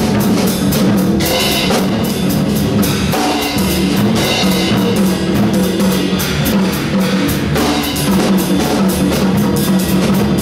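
Jazz upright bass plucked in a walking line with a drum kit playing behind it, cymbals struck steadily throughout.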